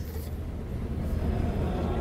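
Room tone of a lecture room: a steady low hum.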